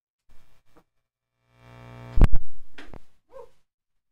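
Sampled sounds played from a keyboard sampler: faint short sounds, then a buzzy held note that swells in and is cut by a loud hit and two shorter hits, ending with a short vowel-like blip.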